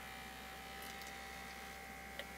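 Battery-powered rubber-duck vibrator (I Rub My Duckie) running, a faint steady buzz.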